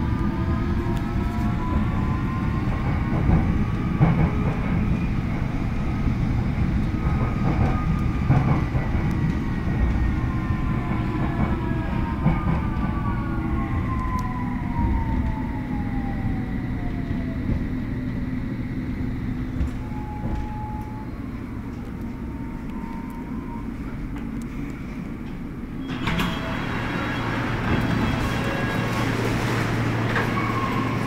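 London Underground S8 Stock train's traction motors whining down in pitch as the train brakes into a station, over a steady rumble; the whine fades out about halfway through as it comes to a stand. Near the end the sound suddenly opens up brighter and louder as the doors open.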